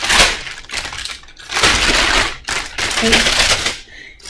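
Clear plastic packaging sleeve crinkling as it is handled, in three bursts of crackling with short gaps between them.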